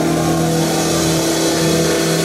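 Live rock band with loud electric guitars holding sustained notes, one guitar bending its pitch up and down.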